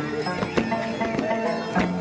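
Chimaycha, Andean folk music from Ayacucho, played live with held string tones and a clattering beat of sharp strokes.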